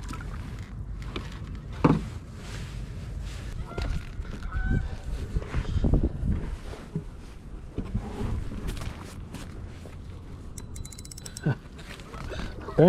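A few short honking bird calls near the middle, over a steady low wind rumble on the microphone. A few knocks and a brief fast run of clicks near the end come from the spinning rod and reel being handled and cast from the kayak.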